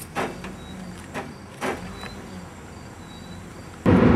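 A vehicle's engine idling with a low steady hum, with three short knocks or clanks.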